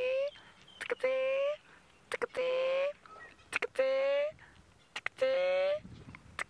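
Mongoose alarm calls: a short, slightly rising, whistle-like call repeated about five times, roughly every second and a half, each led by a couple of sharp clicks. It is the warning a mongoose gives other members of its group when an eagle or other predator comes for them.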